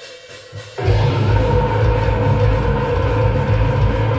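Metal band playing live on guitars, bass and drum kit: after a short, quieter lead-in, the full band comes in loud about a second in and keeps going.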